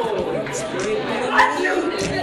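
Children chattering, several voices over one another, with one louder call about one and a half seconds in.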